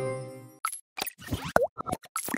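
The last held notes of the band's song fade out, then a cartoonish logo-animation sting of quick pops and plops with a short sliding tone about a second and a half in.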